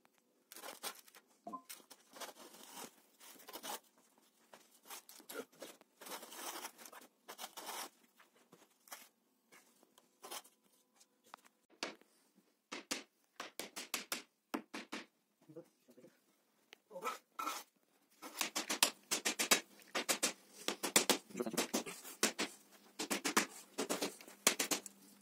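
Hands scraping and brushing damp sand flat along a steel angle guide rail, in short scratchy strokes that come thicker and louder in the last few seconds.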